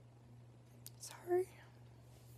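A woman crying: one short, breathy sob a little past halfway through, preceded by a small click. A faint steady low hum runs underneath.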